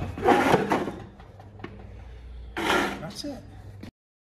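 Hinged plastic hood of a Hunter benchtop brake lathe being lowered and knocking shut: a short clattering rustle lasting under a second, then a light click.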